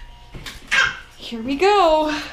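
Rottweiler–Bernese mountain dog mix whining in a bathtub: a softer sound about half a second in, then a short cry that rises and falls in pitch near the end.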